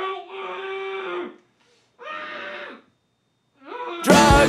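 A person's voice letting out long, drawn-out wailing cries: a held cry that sags in pitch at its end, a shorter one about two seconds in, and a cry rising in pitch near the end.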